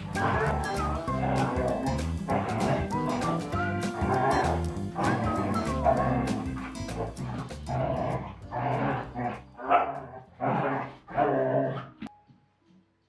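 Two young Siberian huskies barking and yipping as they play-fight, over background music. In the last few seconds the dog sounds come as short separate bursts.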